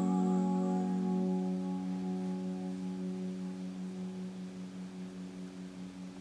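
The final chord of an acoustic and an electric guitar ringing out and slowly fading, with a slight pulsing in the sustain. A held sung note trails off about a second in.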